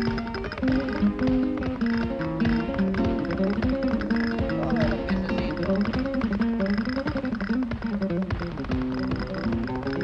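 Flamenco music: guitar playing a stepping melody under many sharp percussive taps.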